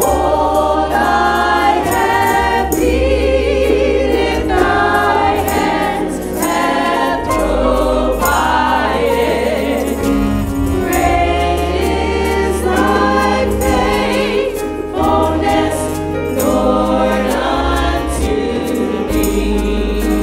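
Church praise team of women's and a man's voices singing a gospel song together into microphones, over a bass accompaniment that changes note every second or two.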